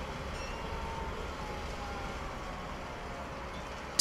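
Steady low rumble of high-rise construction-site ambience, with faint thin tones drifting slightly downward.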